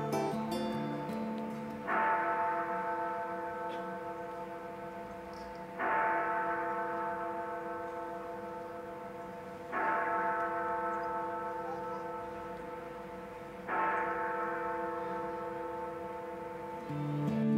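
A large bell tolling, struck four times about four seconds apart. Each stroke rings on and slowly fades before the next.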